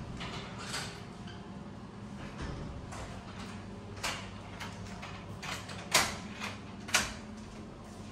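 Footsteps on a hard floor: a series of sharp clicks and knocks about half a second apart, the two loudest about six and seven seconds in, over a steady low hum.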